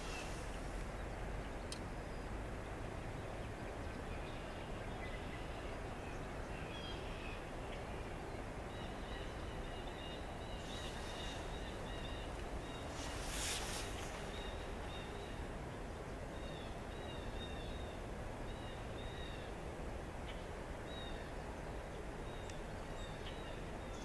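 Steady outdoor background hiss with a series of short, high bird chirps starting about a third of the way in and repeating to the end, and a brief rush of noise a little past the middle.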